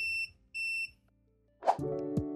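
AllPowers R1500 portable power station beeping its overload alarm: two short, high beeps in the first second, the sign that its output has cut off from an overload (E2 error). Music comes in near the end.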